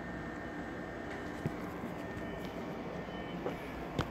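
Steady low background rumble with a few faint clicks, about a second and a half in, near the end, and at the very end.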